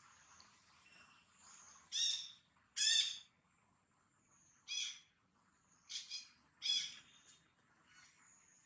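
Five short, high-pitched animal calls, about a second apart, over a faint steady high drone.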